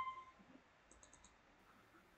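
Near silence, broken about a second in by four faint, quick clicks of a computer mouse or keyboard in use.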